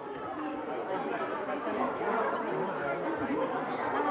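Chatter of many overlapping voices, with no single speaker standing out.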